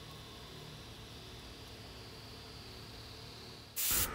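Faint steady background hiss with no distinct sounds. A brief, loud burst of hiss comes just before the end.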